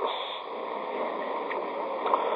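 Steady hiss and background noise of an old, narrow-band recording, with a faint tick about one and a half seconds in.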